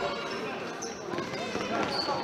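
Sound of an indoor futsal match in a sports hall: spectators talking indistinctly, with the ball thudding on the hall floor and a couple of short high squeaks.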